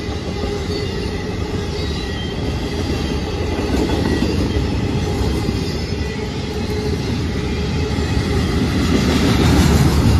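Double-stack intermodal container cars of a freight train rolling past close by: a steady rumble and rattle of steel wheels on rail, with faint high-pitched tones over it. It grows somewhat louder near the end.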